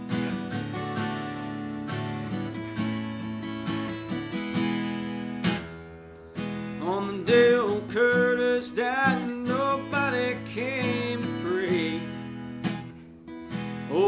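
Steel-string acoustic guitar strummed in a slow country-rock chord pattern, without words. In the second half a wavering, bending melody line rises over the chords.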